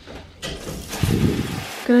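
Shower turned on at the valve: water starts spraying from a handheld shower head about half a second in and runs as a steady hiss, briefly heavier for a moment in the middle.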